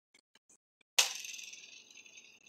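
A small plastic game spinner flicked about a second in, whirring and ticking as it slows down, after a few faint clicks.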